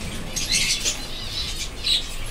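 A roomful of caged budgerigars chirping and chattering, with bursts of fluttering wings about half a second in and a louder one just before the end.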